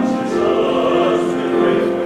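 Male voice choir singing a hymn, holding sustained chords in close harmony, moving to a new chord shortly after the start.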